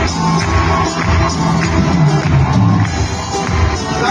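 A Persian pop band playing live, with a singer, drums and keyboards, recorded from the audience at a concert.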